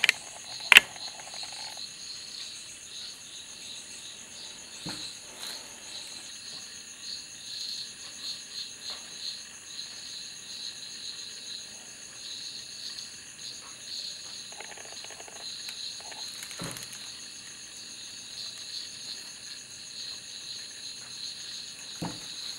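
Insects chirring steadily in the background. A sharp click comes about a second in, and a couple of fainter knocks follow later.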